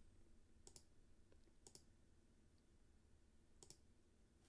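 Near silence with three faint computer mouse clicks: the first two a second apart, the third near the end.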